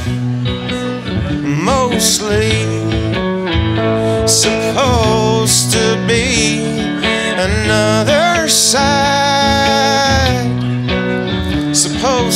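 Live country-blues song: a man singing long, wavering held notes over a strummed electric guitar.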